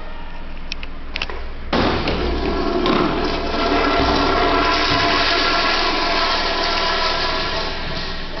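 A wall-hung urinal's flush valve flushing: after a couple of light clicks, a sudden rush of water about two seconds in that runs on for several seconds and starts to fade near the end.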